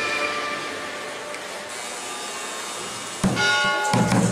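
A held musical chord fades out in the first half-second, leaving a quieter stretch of background noise. About three seconds in, a loud ringing tone with several pitches starts suddenly.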